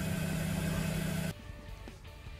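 Pitching machine's motor running with a steady hum, cutting off abruptly a little over a second in.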